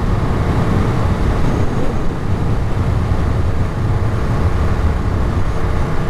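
Ducati Monster 937's V-twin engine running at a steady cruising speed, mixed with heavy wind rush on the microphone.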